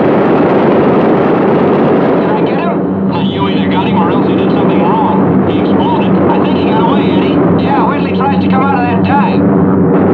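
B-17 Flying Fortress's radial engines droning steadily. From about two and a half seconds in, crew voices come through thin and unclear over the interphone.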